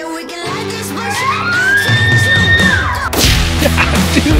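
Background music with a bull elk bugle over it: one whistled call that rises, holds high and falls away. Just after it ends, about three seconds in, comes a sudden loud bang.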